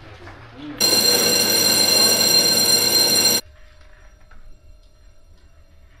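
An electric bell rings loudly and steadily for about two and a half seconds, starting about a second in and cutting off sharply.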